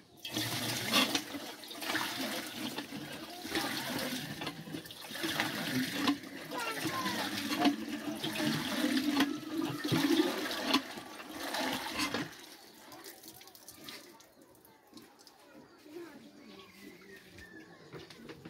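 Water gushing from a lever-operated hand pump into a metal water pot as the handle is worked. It stops abruptly about twelve seconds in, leaving a much quieter background.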